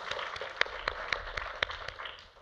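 Audience applauding, with many separate claps distinct, dying down at the end.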